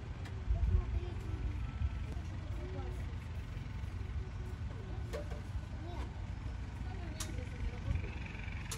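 Outdoor ambience: a steady low rumble with distant, indistinct voices, and a couple of faint clicks in the second half.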